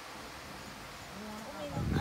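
Quiet outdoor background hiss with a short, low voice sound a little past halfway, then a person starting to speak right at the end.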